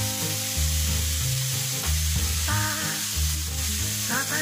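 Shredded chayote and carrot sizzling in a hot wok, a steady hiss that cuts in suddenly at the start. Background music with a repeating bass line plays underneath, a melody joining about halfway through.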